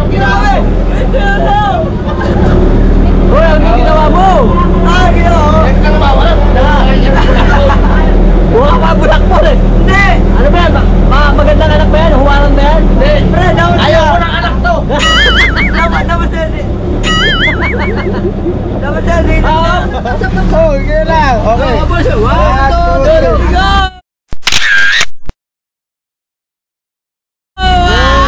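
Several men laughing and shouting loudly over the steady low drone of a boat's engine. The sound cuts off abruptly about two seconds before the end, after one short burst of voices.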